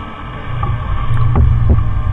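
Tractor engine running under mowing load, a low drone that grows louder about half a second in, with a couple of faint knocks.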